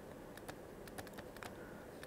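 Faint, irregular light clicks of a stylus tapping on a pen tablet while handwriting, several in quick succession.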